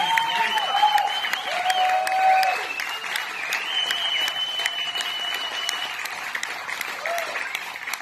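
Audience applauding, with whoops and shouts over the clapping and a high whistle held for about two seconds near the middle; the applause slowly dies down.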